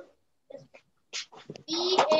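A child's high-pitched voice over a video call, starting about two-thirds of the way in to read a word from the list aloud, after a short pause broken by a few brief sounds.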